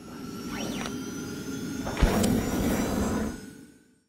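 Logo-sting sound effect: a rushing whoosh that swells up, a sharp hit about two seconds in, then a fade to silence.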